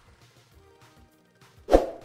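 Soft synth background music from an online slot game, playing quietly, with one sharp thud near the end.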